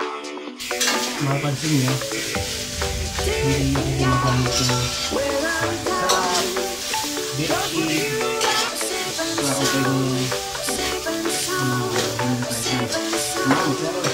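Pork and green beans sizzling in a stainless steel wok while a spatula stirs and scrapes them in short, repeated strokes. Background music with a melody comes in about half a second in and plays under the cooking sounds.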